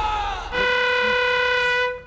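Trailer music fades with a slightly falling note, then a single steady horn note sounds for about a second and a half and stops abruptly.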